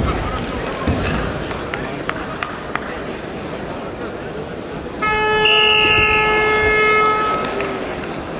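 Arena timing buzzer in a wrestling bout, sounding one loud steady tone for about two seconds, starting about five seconds in. Crowd noise runs under it, with a few soft thuds early on.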